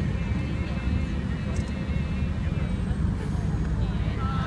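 Steady low rumble under faint, distant voices.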